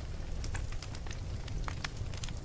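Crackling noise: irregular short clicks over a soft hiss and a low hum.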